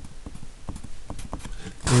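Pencil writing on paper over a hard desk: a string of light, irregularly spaced taps and scratches as letters and dots are put down.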